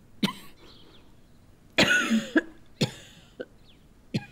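A woman coughing into a handkerchief, a fit of about five coughs with the loudest pair about two seconds in.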